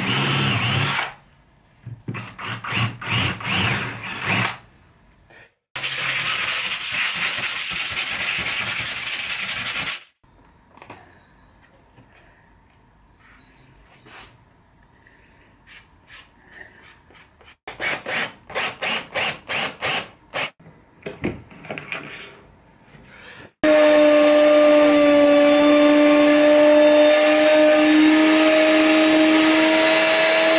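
Several bursts of rhythmic rubbing strokes on wood. About three-quarters of the way in, a router in a router table switches on suddenly and runs with a loud, steady whine.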